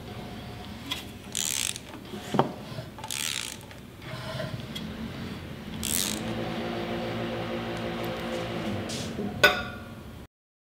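A ratchet wrench turning a HISUN V-twin UTV engine over by hand at the crankshaft, its pawl clicking in several short bursts on the return strokes. This is done after setting the cam timing, to check that the valves clear the pistons. A steady low hum comes in about halfway through.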